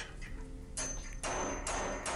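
Recorded machine fault sample of a metal damage sound: repeated harsh metallic bursts, about two and a half a second, starting about a second in, over a thin high whine. It is the sound of a machine in its damaged, error state, the event to be detected.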